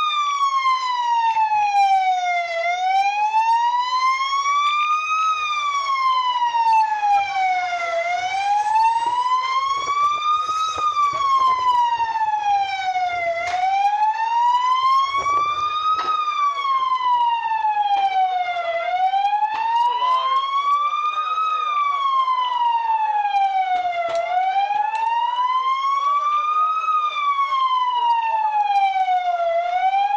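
Emergency-vehicle siren in a slow wail, its pitch rising and falling smoothly and evenly, one full rise and fall about every five and a half seconds.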